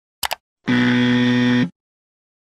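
A quick double mouse-click sound effect, then a low buzzer tone held for about a second, a 'wrong' buzzer marking the share as a mistake.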